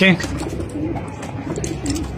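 Domestic pigeons cooing softly in a loft, a low wavering call repeated several times.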